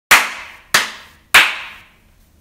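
Three sharp hand claps about 0.6 s apart, each dying away with the echo of a small room: a slate clap used to sync separately recorded audio to the video.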